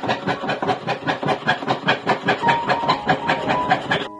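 Jeweller's saw blade cutting fine silver sheet on a bench pin in rapid, even back-and-forth strokes, with a faint ringing from the blade.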